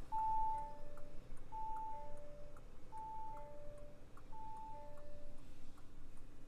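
Two-note electronic warning chime in the cabin of a 2023 Bentley Flying Spur Speed, a high tone falling to a lower one, repeating four times about every second and a half and stopping near the end. Faint regular ticking runs underneath.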